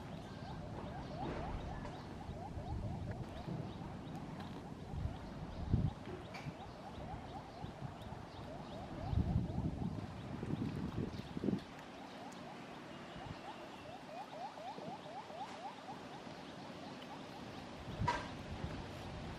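A rapid, steady series of short repeated chirping calls from a small animal in the background, with low rustling thumps from movement about five seconds in and again around ten seconds in.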